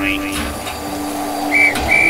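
Railway guard's whistle blown in short, shrill blasts, starting about three quarters of the way through, over a steady hiss with a low hum.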